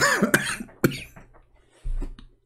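A man coughing hard, three or four harsh coughs in quick succession in the first second, followed by a low thump just before the end.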